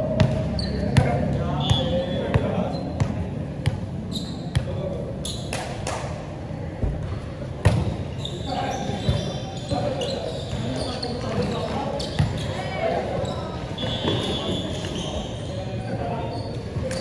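Volleyball being played in a large echoing hall: a string of sharp, irregular slaps and thuds of the ball being served, hit and bounced, with players' voices calling out between them.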